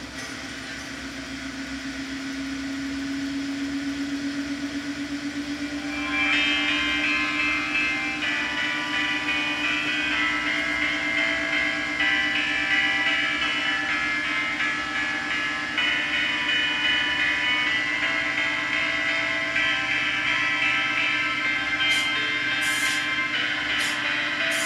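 Samsung front-loading washing machine running, its drum turning: a motor whine rises slowly in pitch over the first six seconds. About six seconds in, a cluster of higher whining tones starts suddenly and holds.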